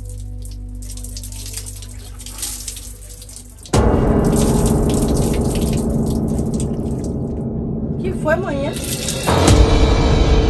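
Water splashing and dripping as a person is washed, over quiet background music. About four seconds in, loud dramatic music cuts in suddenly, and there is a sharp hit near the end.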